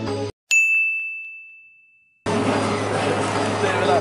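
A single clear bell-like ding struck in a sudden gap of silence, ringing out on one high tone and fading over nearly two seconds before the music comes back in.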